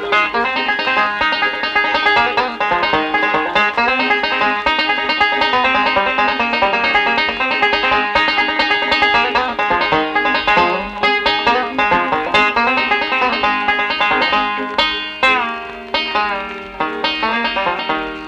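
Five-string banjo picking a fast break, with a fiddle playing underneath. Near the end several notes slide down in pitch, the pitch bends of Scruggs tuners being turned.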